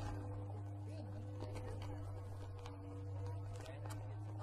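A steady low hum with two fainter held higher tones, with faint murmuring voices.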